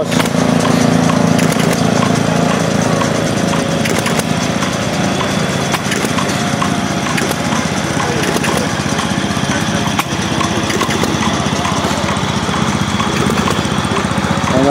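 Small engines running steadily, with a light, regular ticking on top.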